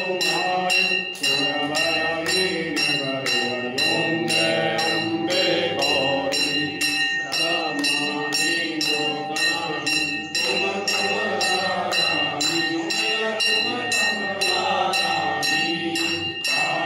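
Hanging brass temple bell rung by hand in a steady fast rhythm, about two to three strokes a second, its ring held on between strokes. Under it, a group of worshippers singing devotional chant.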